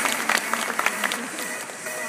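Audience and stage guests applauding, the clapping dying away over the two seconds.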